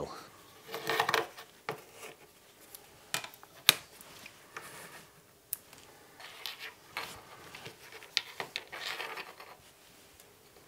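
Small electronic parts and a cable being handled and set down on a workbench mat: scattered sharp clicks and light taps, the loudest about halfway through, between short bursts of rustling.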